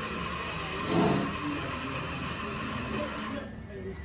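Indistinct background voices over a steady hiss of room noise. The hiss drops away about three and a half seconds in, with a brief louder swell about a second in.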